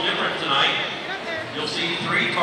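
Crowd chatter in a gymnasium: many overlapping voices talking at once, with no single voice standing out.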